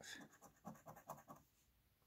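Coin scratching the coating off a scratch-off lottery ticket: a few faint short strokes.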